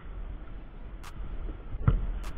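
Low wind rumble on the microphone, with a couple of faint clicks and one heavy thump near the end.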